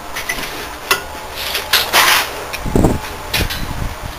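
Irregular knocks, clatter and scraping of metal parts as the mini quad bike's rear end is handled, a few sharp knocks and a short rumble among them.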